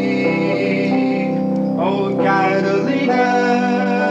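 Live band playing a slow song: long held chords, with a male voice sustaining notes between lyric lines.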